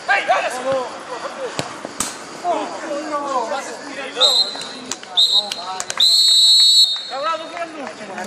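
Referee's whistle blown in three blasts, two short ones about a second apart and then a long one, the usual signal that play is over. Players' voices shout and call out around it.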